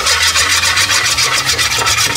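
Rapid back-and-forth scraping and rubbing of a hand-held object across the nonstick surface of a Presto electric griddle, smearing pancake batter, in fast, even strokes.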